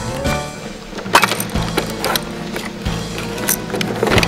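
Background music with several sharp clicks and knocks from a plastic toy cash register being handled, its cash drawer pulled open.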